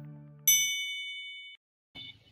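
A single bright ding struck about half a second in, ringing with a few clear high tones for about a second before it cuts off abruptly, after the last chord of fading music.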